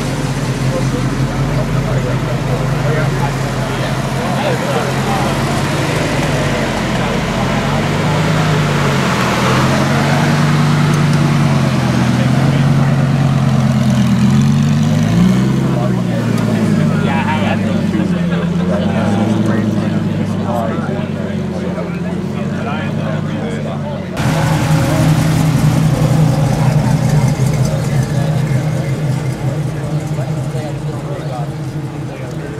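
Lamborghini Gallardo Superleggera's V10 running and blipped several times, its pitch rising and falling, as it pulls away among people talking. About 24 seconds in, the sound jumps to a 1969 Chevrolet Camaro's engine idling steadily and louder.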